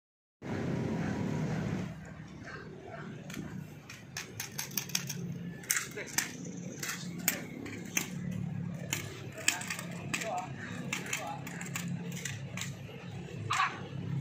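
Voices talking low, with many sharp clicks and taps scattered through from about three seconds in.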